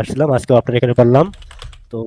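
A man's voice speaking quickly, breaking off about a second and a quarter in.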